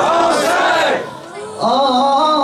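Men's voices in a Muharram noha lament: a loud burst of several male voices calling out together, then after a brief drop a single male voice takes up a held sung note again.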